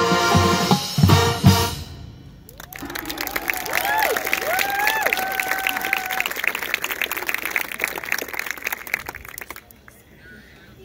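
A marching band's brass and percussion hold a final chord with a few heavy drum hits, cutting off about two seconds in. The crowd then breaks into applause with cheering and whoops, which gradually die away near the end.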